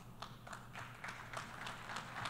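Faint, scattered clapping from an audience, a run of separate claps that grows a little louder.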